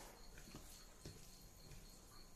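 Near silence with a few faint soft ticks, about half a second apart, from fingers mixing rice and meat in a steel bowl.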